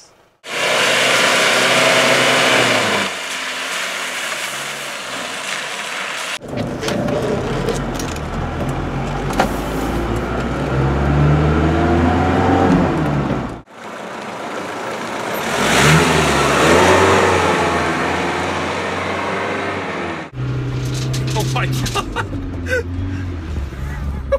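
Mercedes G-Wagen 240GD's diesel engine heard from inside the cab while driving, revving up and falling back through the gears. The sound comes in several short clips with abrupt cuts between them, and there is loud rushing noise in the first few seconds.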